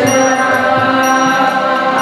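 Kirtan: a harmonium holding sustained chords under a group chanting a devotional mantra, steady and continuous.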